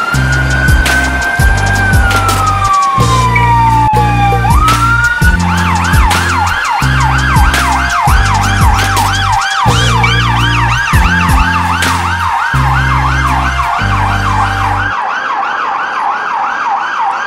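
Police vehicle siren sounding a slow wail that rises, holds, then falls over a few seconds, before switching to a rapid yelp of about three sweeps a second. A music track with a steady beat plays underneath and stops about a second before the end.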